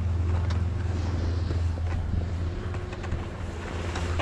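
Wind rumbling steadily on a first-person camera's microphone while skiing downhill, with the hiss of skis sliding over groomed snow and a few faint clicks.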